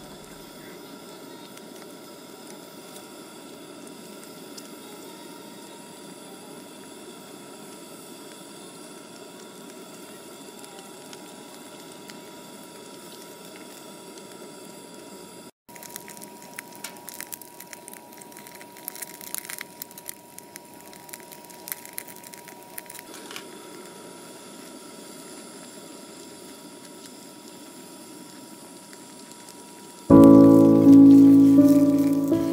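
Steady hiss of a canister gas stove burning under a pot of simmering soup. After a cut, burning charcoal in a grill crackles with irregular sharp pops under a pan of meat for several seconds, then settles back to a steady hiss.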